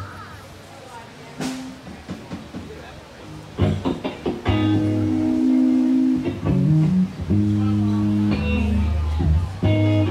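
Crowd voices, then, about three and a half seconds in, loud music with guitar and bass starts, held chords changing about once a second.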